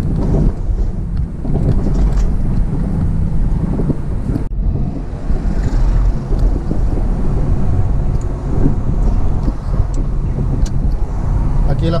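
Car interior driving noise: a steady low rumble of engine and tyres on city streets, heard from inside the cabin. It breaks off for an instant about four and a half seconds in.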